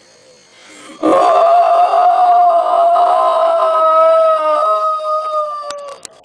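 One long, high-pitched howl that starts about a second in and holds a steady pitch for about five seconds, sagging slightly and fading near the end.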